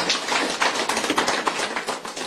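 Audience applauding: a dense patter of many hand claps that thins a little toward the end.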